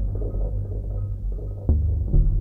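Behringer DeepMind 6 analogue polysynth playing an ambient patch: a sustained low bass drone, with a new note striking sharply near the end. The notes are articulated by LFO-triggered, looping envelopes and heavy cross-modulation rather than an arpeggiator or sequencer, with the synth's own effects.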